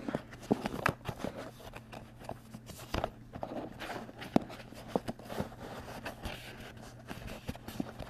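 Irregular light taps, clicks and rustles of fingers flipping through tabbed cardstock dividers in a handmade card box, handled close to the microphone, over a steady low hum.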